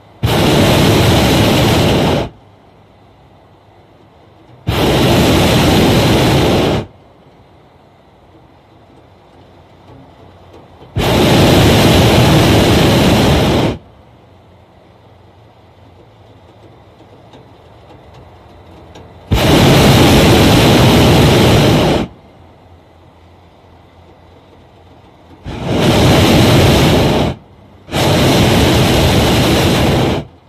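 Hot air balloon's propane burner firing in six blasts of two to three seconds each, the last two close together near the end.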